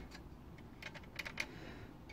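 A few faint, short clicks from a JVC 5.25-inch floppy drive's mechanism being worked by hand: the door lever and the clamp that grips the disc.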